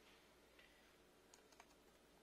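Near silence with a few faint, short clicks and taps about one and a half seconds in as the plastic laptop body is handled and set down on the floor.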